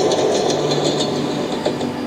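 Huawei MateBook X Pro 2024's built-in speakers playing back a video soundtrack of a passing train, a steady noisy sound, picked up by a microphone held just above the keyboard.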